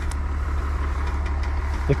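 Farm tractor engine idling steadily, a low even rumble, with the tractor standing still and hitched to a mower conditioner.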